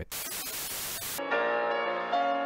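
A loud burst of static hiss, about a second long, that cuts off abruptly into music with long held string notes.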